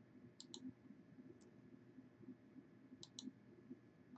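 Faint computer mouse button clicks over quiet room tone: a quick pair near the start, a single click about a second and a half in, and another quick pair about three seconds in.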